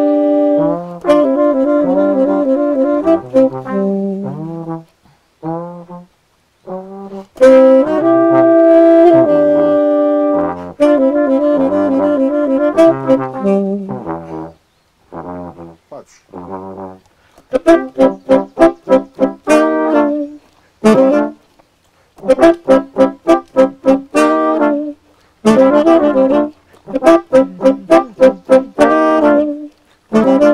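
A live horn trio of saxophone, trombone and trumpet playing together. The first half is sustained chords over a moving lower line; from about 17 s in it turns to short, punchy staccato notes in quick groups.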